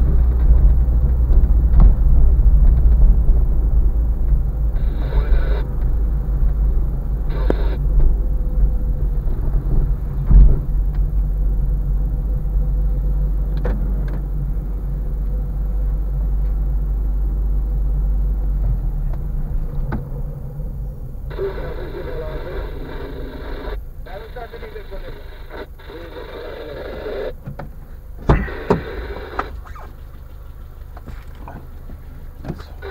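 Inside a car driving slowly on a rough street: a steady low engine and road rumble with a single thump about a third of the way in. The rumble drops off about two-thirds of the way through as the car slows to a stop, while muffled voices come in short stretches.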